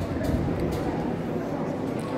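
Indoor arena background: a steady murmur of distant spectator voices and hall noise echoing around a large athletics hall, with no single sound standing out.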